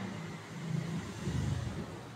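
Faint low rumble that swells and fades about a second in, over a light background hiss.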